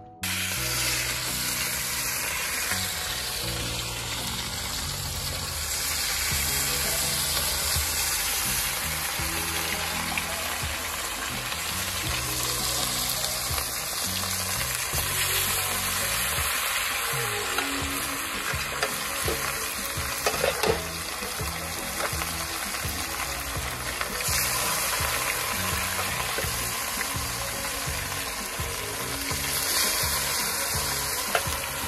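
Seasoned fish pieces frying in hot oil in a cast-iron skillet, browning as the first stage of brown stew fish: a steady sizzle.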